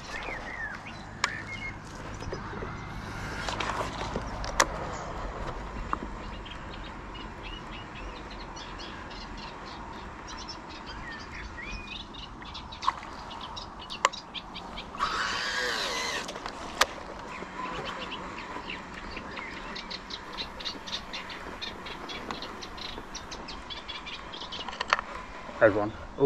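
Small birds chirping over the open-air background, with scattered sharp clicks and knocks that come thicker near the end and a brief rush of noise about fifteen seconds in.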